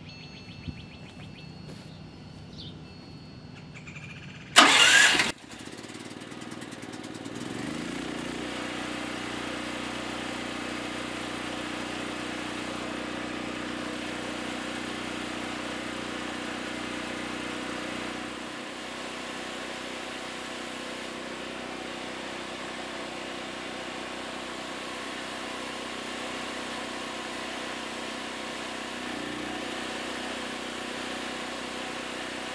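Generac GP8000E portable generator's 420cc overhead-valve engine, on choke, cranks loudly and briefly about four and a half seconds in and catches within a second. It revs up over the next couple of seconds and then runs steadily, settling a little lower about two-thirds of the way through.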